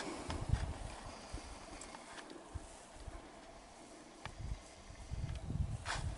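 Footsteps in deep snow, heard as irregular muffled low thuds from about four seconds in, after a quieter stretch of faint outdoor hiss.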